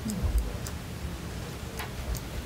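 A few light, scattered clicks and taps of handling noise at a meeting table strewn with papers, with one dull thump near the start, over the low hum of the room.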